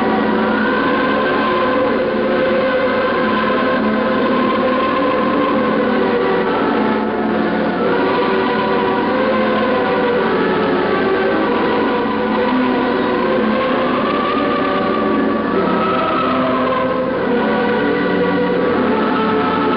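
Many voices singing together in sustained, slowly moving notes over a continuous wash of crowd noise: a large crowd or a choir singing.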